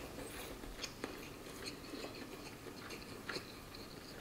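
A person chewing a mouthful of lean beef brisket with the mouth closed: faint, soft mouth sounds with scattered small clicks.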